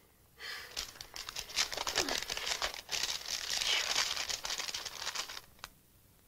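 Paper crackling and tearing: an envelope being torn open and a letter unfolded. The rustling comes in irregular bursts for about five seconds and stops, followed by one small tick.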